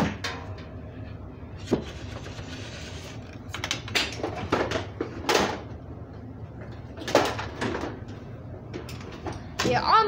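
Handling noise: irregular knocks, bumps and rustles as the camera is moved about and things are shifted around, with a voice starting near the end.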